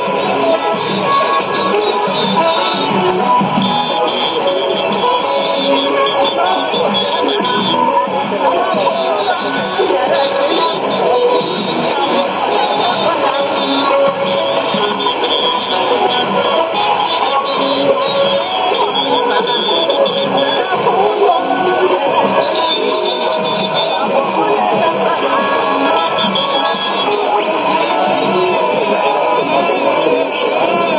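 Music from a shortwave AM broadcast, played through the speaker of a Sony ICF-2001D receiver. It is steady and continuous, with the dull, cut-off treble of AM radio.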